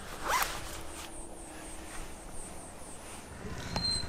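A jacket zipper pulled once in a quick rising zip about a third of a second in. Afterwards only quiet outdoor background with a faint, steady high whine.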